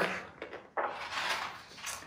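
A page of a hardcover picture book being turned: a soft paper rustle lasting about a second, after a faint click.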